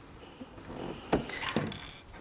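Small clicks from hands handling the parts of a Bernina sewing machine while it is taken apart for cleaning: a sharp click about a second in and a softer one shortly after, over faint handling noise.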